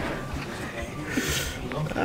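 Low, indistinct voices with a man laughing, a breathy burst about halfway through.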